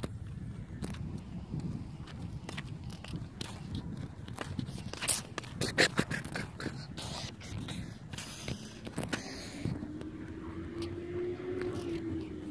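Camera handling and wind rumble as the camera is carried outdoors, with scattered sharp clicks and knocks, the loudest about six seconds in. A faint steady tone comes in near the end.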